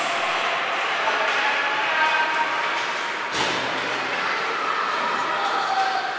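Ice rink arena ambience of overlapping voices from spectators and players during a stoppage in play, with one sharp knock about three seconds in, like a stick or puck striking ice or the boards.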